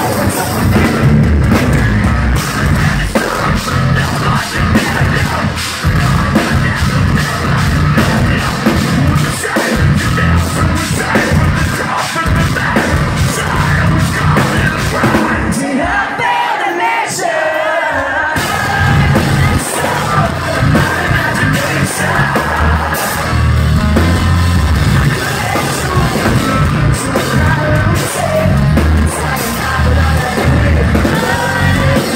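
A metalcore band playing live, loud, with drums, bass, guitars and sung vocals. About halfway through, the drums and bass drop out for about two seconds, leaving the voice and guitar, before the full band comes back in.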